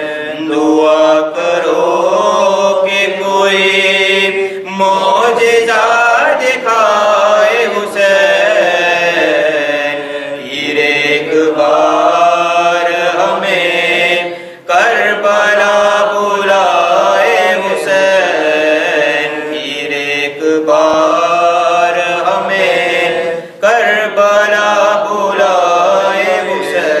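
A solo male voice chanting an Urdu devotional supplication (munajat) unaccompanied, in long held melodic phrases. There are short breath pauses about 15 and 23 seconds in.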